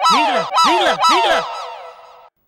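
A comic sound effect: three quick pitched calls that rise and fall in a row, followed by an echoing tail that fades away.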